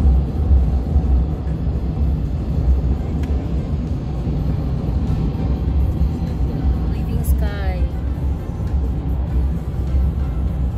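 Steady low road and wind rumble inside a vehicle's cabin at highway speed, with background music over it. A short sliding pitched sound comes through about seven and a half seconds in.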